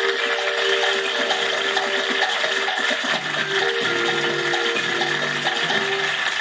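Quiz show break music played through a television: held synth chords over a steady ticking pulse, with lower bass notes coming in about three seconds in.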